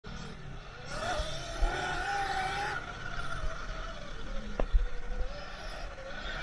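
Sur-Ron electric dirt bike's motor whine, rising in pitch about a second in and dropping back after about three seconds as the bike speeds up and eases off. Low, uneven rumble comes from the bike running over the bumpy dirt track, with one sharp knock a little before five seconds.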